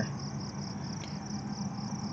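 Insects chirping outdoors in a steady train of rapid, evenly spaced high pulses, about seven a second, over a steady low hum.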